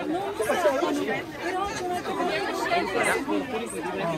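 Indistinct chatter of a group of teenagers talking over one another, with no single voice standing out.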